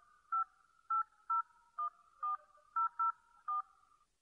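Touch-tone telephone keypad being dialed: about nine short two-tone beeps at uneven intervals as a phone number is keyed in.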